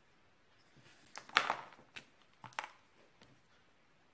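Plastic felt-tip marker being handled and uncapped: a few quiet clicks and a short rustle, the sharpest click about a second and a half in, with two more near two and two and a half seconds.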